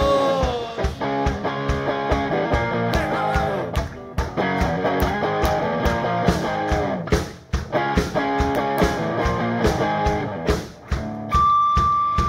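Live rock band playing: a guitar plays melodic lead lines over drums and bass, and a long high note is held steady near the end.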